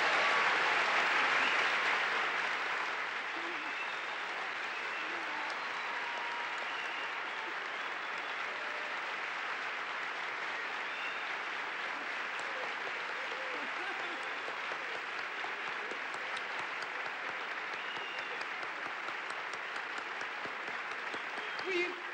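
A large hall audience applauding in a standing ovation, loudest in the first few seconds and then settling into steady, sustained clapping, with a few voices calling out.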